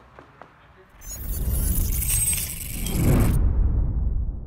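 An outro logo sound effect: a loud noisy rush begins suddenly about a second in and cuts off sharply near the end, leaving a low rumble that dies away.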